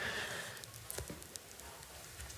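A pause in speech: faint room noise with a few soft clicks.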